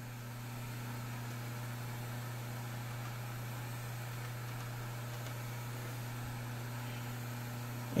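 Knee mill's spindle motor running steadily with a low, even hum, the edge finder turning in the spindle.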